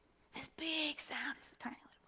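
A woman's voice saying a short, soft, breathy phrase in a few quick bursts, quieter than her preaching.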